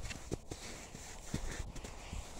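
Footsteps of a person walking over patchy snow and dry grass: a few soft, irregular thumps.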